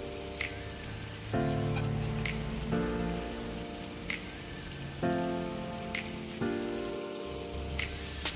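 Whole galunggong (round scad) frying in hot oil in a pan, a steady sizzle. Background music of sustained chords that change every second or two plays over it.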